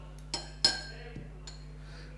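Glass clinking: a test tube knocking against the glass beaker it stands in. There are two light knocks about a third of a second apart, the second louder, each with a brief ring, then a couple of fainter taps.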